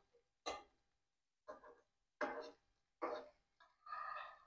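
Metal spatula knocking and scraping against a ceramic-coated frying pan while turning parathas: five faint, short knocks about every half to three-quarters of a second, each with a brief ring.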